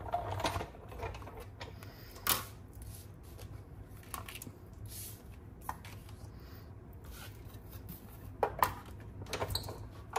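Clear acrylic cutting plates and cardstock being handled on a manual die-cutting machine: scattered light taps, clicks and paper rustles, with a sharper knock about two seconds in and a pair of knocks near the end as the plates are set down.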